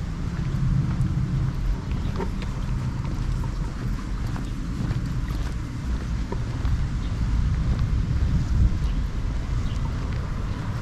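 Wind buffeting an uncovered GoPro microphone, an unsteady low rumble that swells and fades, with faint footsteps on pavement.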